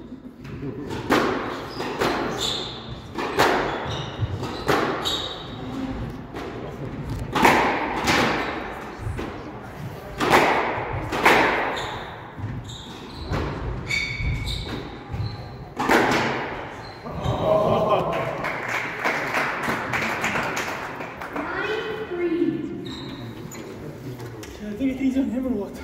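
A squash rally: the ball struck by rackets and hitting the court walls in sharp, echoing hits, irregularly about every second or so.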